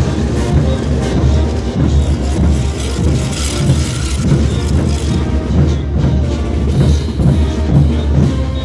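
Festive band music for the parade dancers: a steady drum beat about twice a second under held melody notes.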